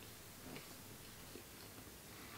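Faint chewing of soft brie-style cheese, with a few small mouth clicks over quiet room tone.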